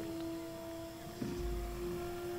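Quiet film soundtrack: a sustained held note of background score, with a low rumble coming in near the end.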